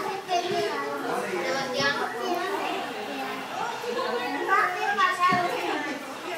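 A young girl talking continuously.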